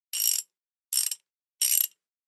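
Ratchet mechanism clicking in three short, rapid bursts, about three quarters of a second apart.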